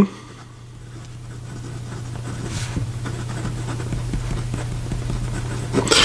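A fine steel fountain-pen nib, held upside down for reverse writing, scratching lightly across paper as a word is written, over a steady low hum.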